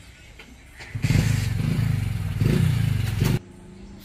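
A motor vehicle engine running loudly, rising in pitch once partway through. It starts about a second in and cuts off suddenly near the end.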